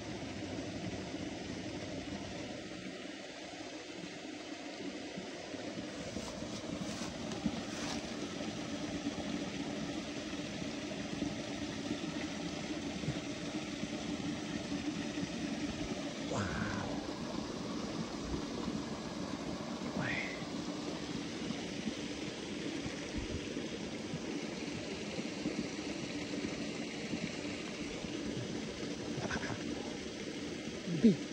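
Steady outdoor background noise with a faint low hum throughout, and two brief faint high sounds a little past the middle.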